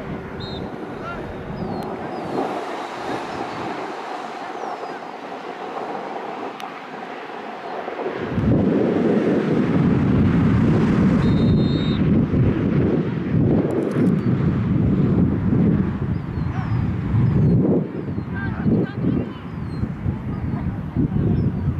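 Wind buffeting the microphone, much louder from about eight seconds in, over faint distant voices.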